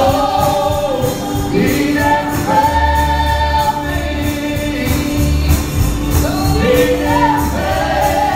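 Gospel song sung by several voices in harmony, holding long notes over a bass line, with a steady beat of light high percussion.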